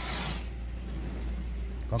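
Noise on the microphone: a short rushing hiss at the start, then a quieter rustle over a steady low rumble.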